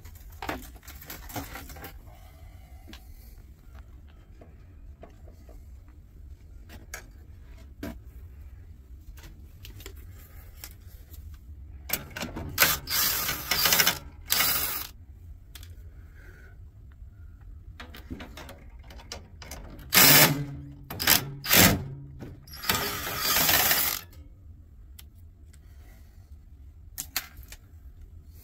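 Hand tools and metal parts being worked on a steel equipment cabinet: scattered clicks and knocks, with two spells of louder scraping rattle, about twelve and twenty-two seconds in.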